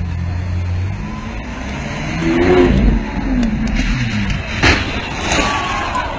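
A sports car's engine revving as it accelerates along a street, the pitch climbing and falling twice, with a sharp crack a little before the end.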